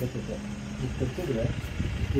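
Men talking, with a low steady rumble underneath.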